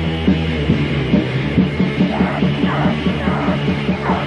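Raw, lo-fi black metal demo-tape recording: loud distorted guitar riffing in a fast, even rhythm, with a harsh yelled vocal coming in about halfway through.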